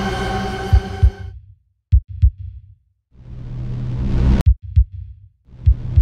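Horror-trailer soundtrack: a held drone fades out about a second in, then low heartbeat thumps in pairs and two rising whooshes, each ending in a sharp hit.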